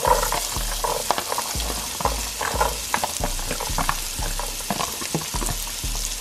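Diced celery hitting hot melted butter in a pan and sizzling steadily, with many small crackling pops.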